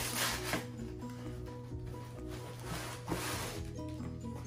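Tissue paper and a cloth shoe dust bag rustling as they are handled in a cardboard shoebox, loudest at the start and again about three seconds in. Soft background music with a simple melody of single notes plays throughout.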